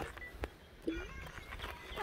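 A lull with a single sharp click, then a short rising vocal squeak from a person just under a second in.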